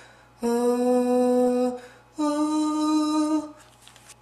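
A voice humming two long, steady notes, each held a little over a second, the second higher than the first.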